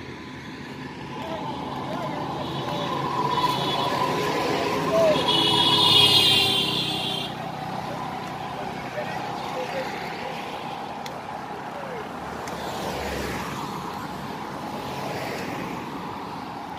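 Road traffic passing on a bridge: a vehicle goes by, loudest about six seconds in, while a high-pitched horn sounds for about two seconds, then steady traffic noise carries on.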